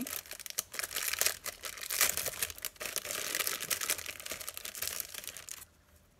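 Paper wrapping crinkling and rustling as a small packet is opened by hand, with small clicks and crackles throughout; it stops suddenly shortly before the end.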